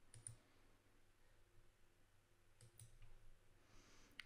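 Faint computer mouse clicks: a quick pair of clicks at the start and another pair a little under three seconds later.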